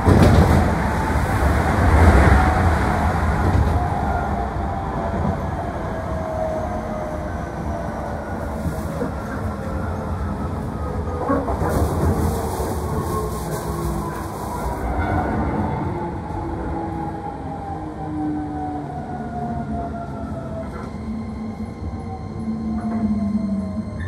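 Electric commuter train heard from inside the car as it brakes into a station: steady running rumble with the whine of the traction motors falling slowly in pitch as the train slows to a stop.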